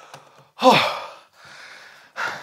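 A man's loud, breathy sigh about half a second in, its pitch falling steeply, followed by a faint rustle.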